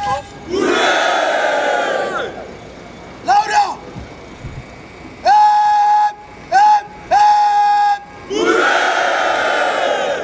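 Parade-ground shouting: a formation of cadets shouting in unison twice, at the start and near the end. Between the two, drawn-out calls are held on a single pitch.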